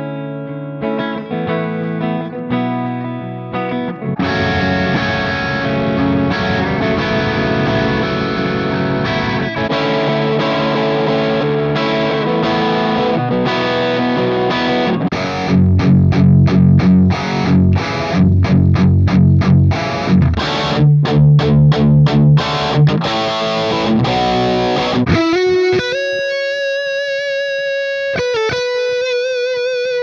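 PRS semi-hollow electric guitar played with distortion, heard in turn through a miked Blackstar amp and through the Axe-FX II digital amp modeler. It plays sustained chords, then heavy muted chugging riffs in the middle, then single-note lead lines with vibrato near the end.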